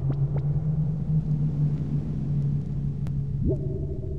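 A steady low electronic bass drone played through a club sound system. About three and a half seconds in, a tone sweeps upward and holds at a higher pitch over the drone.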